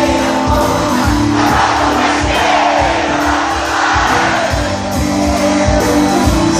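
Live Celtic rock band playing, with fiddle and a steady drum beat, heard from among the audience in a festival tent. In the middle the beat thins out while crowd noise swells, then the full band carries on.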